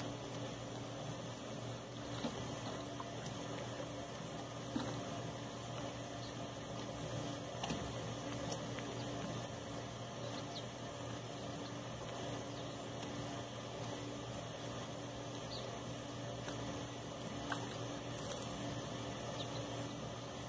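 Quiet lake-water ambience: a steady low hum under faint water noise, with a few light ticks now and then.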